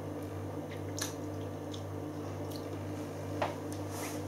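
Faint wet mouth sounds of beer being held and worked in the mouth while tasting, with a few small lip and tongue clicks, over a steady low hum.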